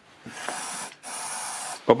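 Two short bursts from an aerosol can of starting spray, each about two-thirds of a second long, sprayed into the open intake port of a two-stroke scooter engine with its carburettor removed to get it to fire.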